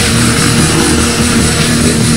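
Black/death metal song: a loud, steady wall of distorted, heavy-metal band sound.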